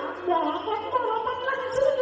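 A stage actor's voice, drawn out and wavering in pitch, with a rough, gargle-like quality.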